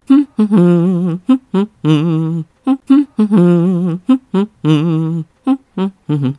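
A voice humming a tune: a run of short, quick notes mixed with a few longer held notes whose pitch wavers.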